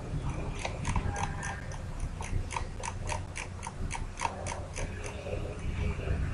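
Computer mouse scroll wheel turning through its notches: a quick run of small, sharp clicks, about three to four a second, over a low steady hum.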